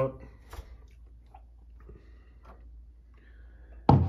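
Faint clicks and handling noise as a plastic microwave steam cleaner is lifted out of a microwave, ending in one sharp knock as it is set down on the countertop, with a low steady hum underneath.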